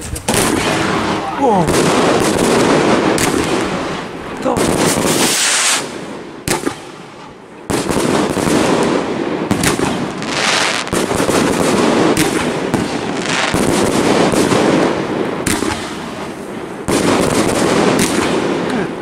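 A 49-shot, 30 mm firework cake (Blue Box TXB896) firing in quick succession: a dense run of launch thumps and crackling bursts. There is a lull about five seconds in, and the shots resume at full pace about two and a half seconds later.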